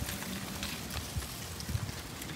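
Faint handling noise of a rubbery Voile strap being pulled under and around a bike handlebar and flashlight, with a few soft knocks.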